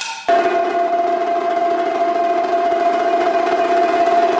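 A steady, sustained pitched drone that starts suddenly just after the start and holds one unchanging note, with a rough, buzzing texture. It belongs to a solo multi-percussion performance.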